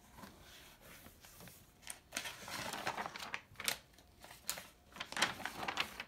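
Paper pages of a beginner piano book being handled and turned on the piano's music desk: irregular rustles, crinkles and light taps, busiest in the second half.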